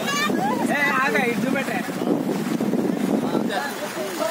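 Men talking outdoors over a rush of noise from flowing floodwater and wind on the microphone. The rush comes through most plainly in the middle, when the talk pauses.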